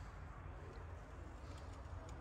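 Quiet room tone: a steady low hum with faint background noise and no distinct events.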